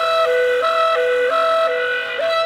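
B-flat clarinet playing a figure that steps back and forth between two notes, changing about three times a second, over a faint low drone.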